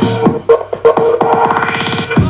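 Electronic dance music mixed live on a Vestax VCI-400 controller in Traktor Pro 2, playing loudly through desktop speakers. The steady kick drops out and a fast repeating roll builds under a rising sweep.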